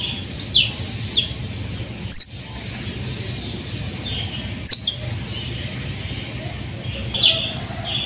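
Sulawesi myna (raja perling) giving loud, sharp, very short calls, two of them about two seconds and nearly five seconds in, with softer chirps in between.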